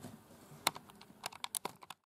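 Light, sharp clicks and taps from the camera being handled to stop the recording: a single click about two-thirds of a second in, then a quick cluster of them in the last second.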